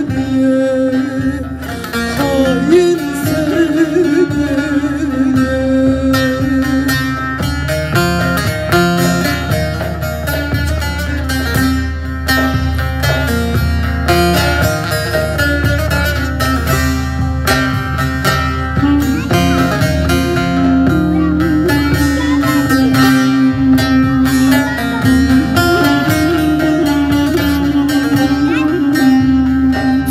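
Live Turkish folk music played by a small band: plucked long-necked lutes (bağlama) and a drum, with a held, wavering melody line over them.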